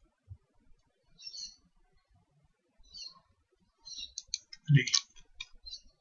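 Computer mouse button clicks: a few scattered clicks, then a quicker run of clicks in the last two seconds.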